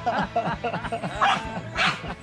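A small dog yipping and barking in frustration while it struggles with a long stick, with two sharper, louder barks in the second half.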